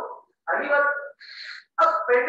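Only speech: a man's voice lecturing, with a drawn-out syllable followed by a short hissing consonant.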